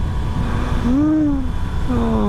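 Steady low rumble of a 2019 Yamaha Tracer 900 GT's three-cylinder engine, mixed with wind and road noise, while riding at cruising speed. A short hummed voice sound rises and falls about a second in, and another voice begins near the end.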